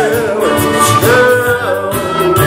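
Live band playing loudly with electric guitar, and a singer holding long sung notes with slides between them.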